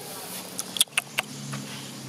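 Three sharp clicks or snaps close together about a second in, followed by a low steady hum like a distant motor vehicle engine.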